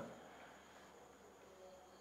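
Near silence: faint room tone with a steady hiss, in a pause between sentences of speech.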